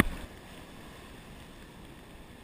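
Steady, muffled wash of ocean surf around a camera held at the water's surface, with the tail of a splash over the camera dying away right at the start.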